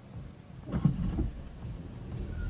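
Low rumble of a car driving in slow city traffic, heard from inside the cabin, with a few faint muffled bumps about a second in.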